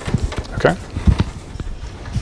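A man says "okay" about half a second in, among a few short, dull knocks, the loudest about a second in.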